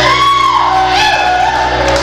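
Live band music: a woman singing, her voice sliding and arching in pitch, over electric guitar and a steady low accompaniment.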